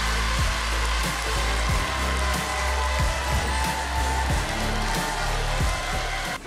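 Show music over a studio audience applauding and cheering, greeting a correct answer.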